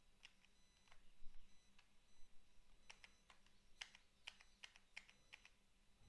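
Faint, irregular clicking of computer keys and mouse buttons, a dozen or so short clicks, as the browser page is zoomed out, in an otherwise near-silent room.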